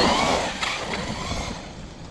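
Traxxas X-Maxx 8S electric RC monster truck driving hard across wood mulch, its motor and tires churning up chips. The sound is loudest at the start and fades as the truck pulls away.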